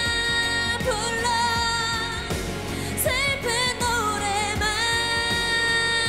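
A woman singing a slow K-pop ballad over instrumental accompaniment, her voice sliding between long held notes.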